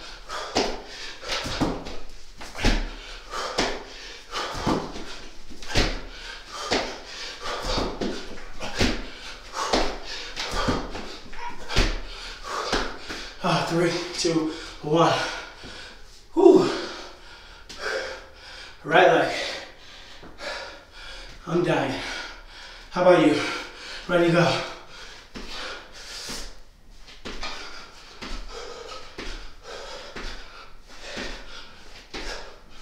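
Burpees on a floor mat: a steady run of thuds, a bit more than one a second, from the jumps and drops, with hard breathing. Partway through they stop, giving way to heavy panting with groaning, voiced exhales. Thuds start again near the end.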